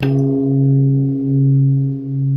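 Closing logo sting: a single deep, bell-like tone that strikes suddenly and rings on steadily, its loudness slowly swelling and dipping.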